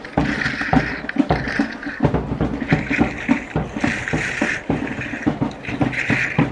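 Skis scraping and chattering over packed, groomed snow at speed, the edge noise swelling in hissing spells with each turn, over constant wind buffeting the microphone and a rapid clatter of small knocks from the skis running over the snow.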